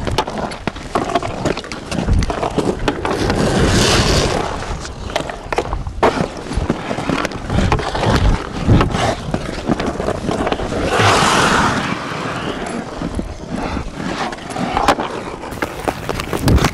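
Hockey skate blades scraping and carving on ice, with a few sharp clicks of sticks on the puck. Two louder, longer hissing scrapes, about four and eleven seconds in, come from blades digging in hard to stop or cut.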